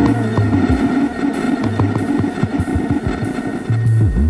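Bowed cello improvisation played with the Fello, a sensor-extended cello bow, through live electronics: low sustained notes with sliding pitches and a scatter of short clicks.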